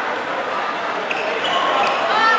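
Live game sound of a girls' futsal match in a sports hall: echoing noise of play on the court, with a few brief high squeaks and a sharp knock in the second half, and high-pitched shouting from the players.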